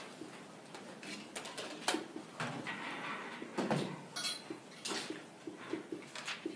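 Dry-erase marker writing on a whiteboard, with short strokes and a brief squeak, amid scattered small clicks and knocks in a classroom.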